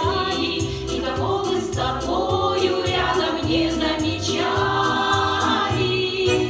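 Women's folk vocal ensemble singing together in chorus over an accompaniment with a steady low beat.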